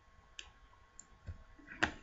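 Computer mouse clicking about four times in a couple of seconds, the loudest click near the end.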